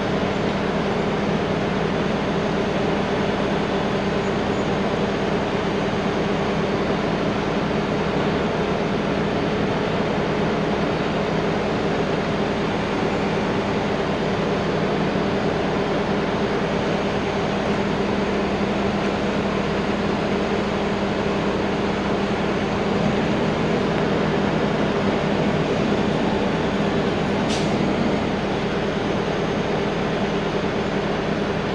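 Heavy-duty wrecker's diesel engine running at a steady, even speed, with one short sharp click near the end.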